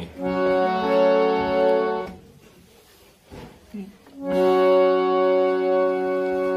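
Harmonium reeds sounding a held note for about two seconds, then, after a pause of about two seconds, another held note that sustains to the end.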